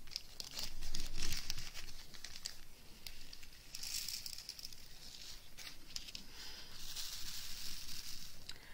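Small clear plastic zip-lock bag crinkling as it is opened and handled, with small crystal diamond-painting drills rattling and clicking as they are tipped into a plastic sorting tray.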